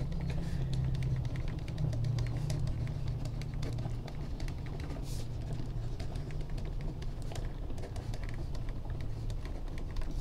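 Pen writing on graph paper: a run of light scratches and small ticks from the pen strokes, over a steady low hum.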